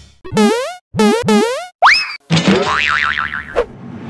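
Cartoon sound effects for an animated logo: three quick springy boings, then a rising whistle-like glide, then a wobbling, warbling tone over a noisy hiss that cuts off shortly before the end.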